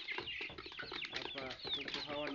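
A flock of young Kroiler chickens peeping and cheeping: many short, high, downward-sliding calls overlapping one another.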